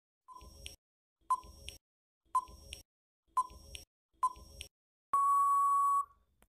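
Countdown-timer sound effect: five short electronic beeps about a second apart, then one long steady beep near the end signalling time out.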